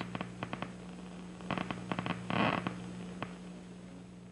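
Action potentials of a single neuron in a cat's primary visual cortex, played through a loudspeaker as clicks: scattered single clicks, with a quick dense burst of firing about halfway through, over a steady low electrical hum.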